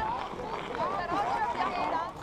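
Chatter of a group of people talking at once, several overlapping voices with high children's voices among them, none of it clear speech.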